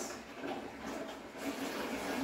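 Aquarium water pump running, with a steady rush of water moving through the tank.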